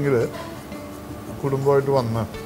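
A man's voice speaking in short phrases, with a quieter pause of about a second in between.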